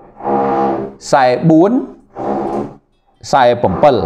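A man speaking close to a microphone in short phrases, drawing out some syllables on a steady pitch.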